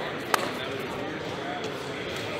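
Spectators talking in the background of a school gym, a low murmur of voices with no single speaker standing out, broken by one sharp knock about a third of a second in.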